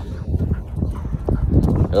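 Wind rumbling on a phone microphone, with irregular footfalls on dry grass and dirt.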